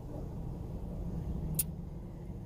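Steady low rumble inside a car cabin, with one short sharp click about one and a half seconds in.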